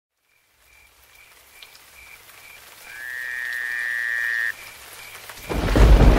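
Intro ambience sound effect: a steady series of short, high chirping calls, about two a second, with a louder trilling call in the middle lasting about a second and a half. A loud rumble of thunder starts suddenly near the end.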